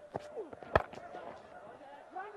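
Cricket bat striking the ball hard: one sharp crack about three-quarters of a second in, from a big lofted hit.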